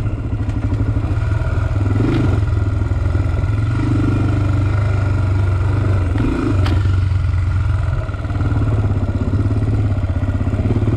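Honda 400-class sport quad's single-cylinder four-stroke engine running steadily at low revs, left in gear on a downhill so it holds the machine back by engine braking. Two sharp clacks come through, about two and six and a half seconds in.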